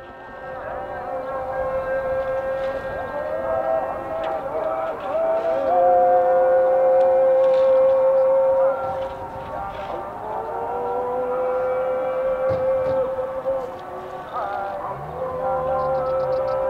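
Islamic call to prayer (adhan) over a mosque loudspeaker: a single voice holds long notes, with slow slides in pitch about a third of the way in and again midway.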